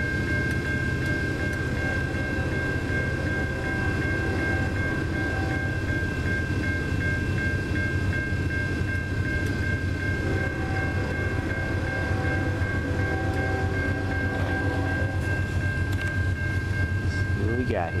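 Railroad grade-crossing bell ringing steadily with the gates down, over a constant low rumble.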